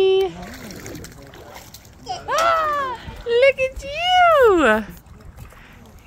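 Water splashing in a swimming pool as a baby is moved through it, under two long, high-pitched sing-song vocal calls that rise and then fall, about two and four seconds in.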